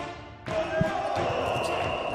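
The end of an intro music sting, giving way about half a second in to game sound from a basketball court, with a basketball bouncing on the hardwood floor.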